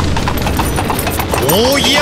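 Rapid horse hoofbeats clip-clopping at an even pace. A singing voice enters about a second and a half in.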